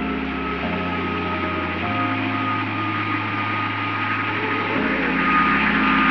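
Jet airliner passing overhead: a steady roar with a thin high whine that slowly falls in pitch, swelling louder near the end. Under it, background music holds low sustained chords that change every second or two.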